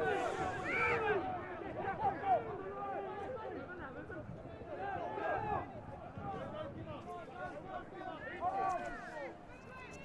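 Many overlapping voices calling out across an outdoor rugby league field, from players and sideline spectators, picked up at a distance.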